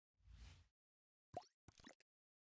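Faint sound effects of an animated logo intro: a soft low whoosh, then about a second later a quick pop with a falling pitch, followed by a second short pop just before the end.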